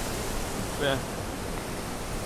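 Steady rushing of water pouring over a small two-step waterfall.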